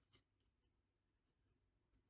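Near silence: room tone, with one faint tap of the tarot deck in the hands just after the start.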